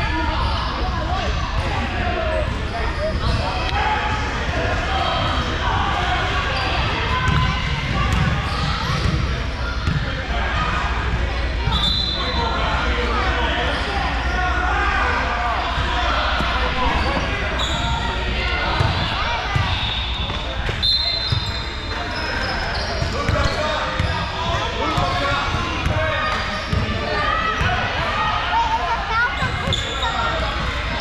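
Indoor basketball game: a basketball bouncing on a hardwood gym floor, with a few short high squeaks, over steady overlapping chatter from spectators in the echoing hall.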